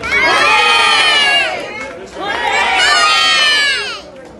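A group of children cheering and shouting together in high voices, in two long bursts with a short dip between them.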